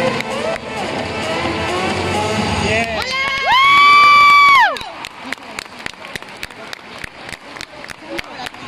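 Routine music with crowd noise stops about three seconds in. Then comes one long, high-pitched cheering shout from a spectator, held for about a second, the loudest sound here. It is followed by sharp claps or taps at a steady beat of about three a second.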